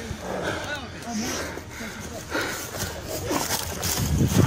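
Low, indistinct men's voices with no clear words, over the rustle of close movement.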